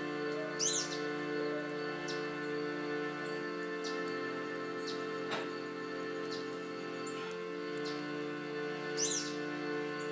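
Harmonium playing sustained reed chords, changing chord a few times. A bird gives a high sweeping call about a second in and again near the end, and there is one sharp click about halfway through.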